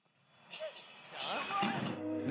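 A brief gap of silence at an edit, then faint voices with background music coming in.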